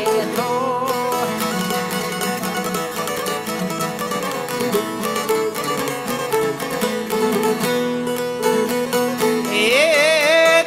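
Albanian folk music on plucked long-necked lutes, çifteli and sharki, playing a steady instrumental passage with quick picked strokes. A man's singing trails off in the first second and comes back in near the end.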